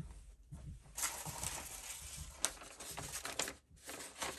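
Faint rustling of paper sheets being handled, with a few light taps.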